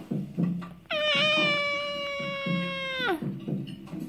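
Infant of about 19 weeks giving one long high-pitched squeal, the 'pterodactyl' screech, held steady for about two seconds and then dropping in pitch as it ends. Music from a TV plays faintly underneath.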